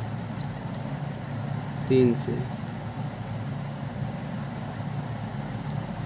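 Steady low mechanical hum, like a fan or motor running, with a few faint scratches of a pen writing on paper and one short spoken syllable about two seconds in.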